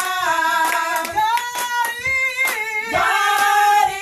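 A small group of women singing a gospel song together, with hand claps through the singing.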